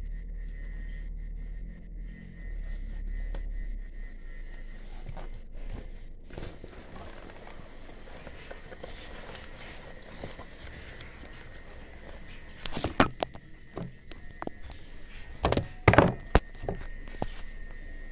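Handling sounds of a fabric backpack and its zipper while a small zipper slider is being worked on: soft rustling and small clicks, with a few loud thunks about two-thirds of the way through and again near the end.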